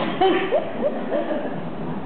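Laughter: a handful of short, pitched ha-ha sounds bunched in the first second, then fading.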